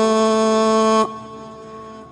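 Solo unaccompanied chanting voice holding the long final note of a verse at a steady pitch, then stopping about a second in and leaving a faint fading echo.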